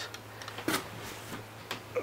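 A few light clicks and taps from a 1/50 scale die-cast Schwing S36 SX concrete pump truck model being handled, the loudest a little under a second in, over a steady low hum.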